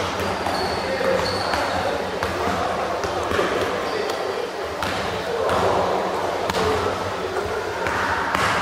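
Basketballs bouncing on a hardwood gym floor, with people talking in a large indoor gym.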